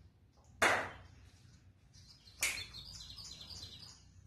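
A man whispering a short phrase, heard as two brief breathy bursts: one about half a second in, the other about two and a half seconds in.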